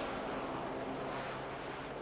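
Turboshaft helicopter running close by: a steady rush of rotor and turbine noise with a low, even hum beneath it.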